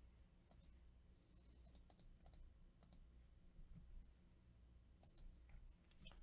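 Near silence with faint, scattered clicks of a computer mouse and keyboard over a low steady hum.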